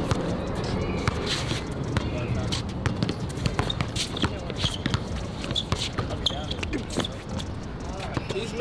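A basketball being dribbled on an outdoor hard court: repeated bounces at an uneven pace, with faint voices under them.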